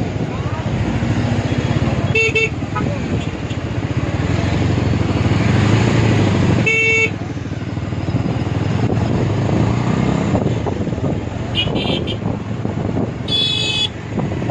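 Heavy traffic heard from a moving two-wheeler: a steady engine and road noise, with four short vehicle horn toots, about two seconds in, near seven seconds (the loudest), and two more close together near the end.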